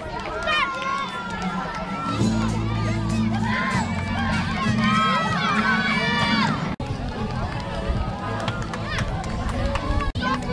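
Crowd of children shouting and cheering, many voices at once, with a low steady hum underneath from about two seconds in to about seven seconds.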